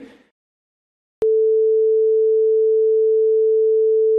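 TV test-pattern tone: after a moment of silence, a single steady pure electronic note starts abruptly with a click about a second in and holds unchanged.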